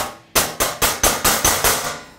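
Hammer tapping thin sheet metal: one strike, a short pause, then a quick run of about eight light blows, roughly five a second. The blows flatten the high side that a fresh TIG tack weld has raised in the panel.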